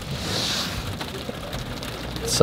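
Steady rain falling on the roof and windows of a car, heard from inside the cabin as an even hiss of many small drops.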